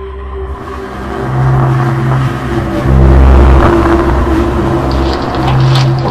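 Dark, rumbling trailer music that swells in loudness, a low bass switching between two notes about once a second under a steady droning tone, with a few sharp high ticks near the end.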